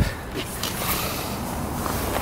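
Steady outdoor background noise, mostly low in pitch, with no distinct events.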